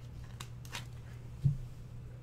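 Trading cards and a rigid plastic card holder being handled: a few faint clicks and rustles, then one low thump about one and a half seconds in, over a steady low hum.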